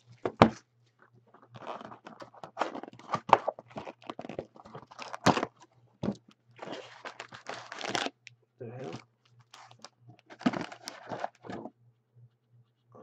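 A cardboard trading-card box being torn open by hand, with tearing and crinkling of its wrapping and cardboard and several sharp knocks as packs are pulled out and set down on the table.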